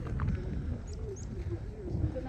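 Wind rumbling on the microphone, with faint distant voices of people talking and two short high bird chirps around the middle.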